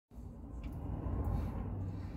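Steady low rumble of a truck's engine idling, heard inside the cab.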